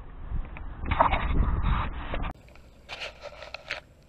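Handling noise of a small action camera: scraping and rustling against its microphone over a low rumble. About halfway through, the sound cuts abruptly to a quieter recording with a few short rustles.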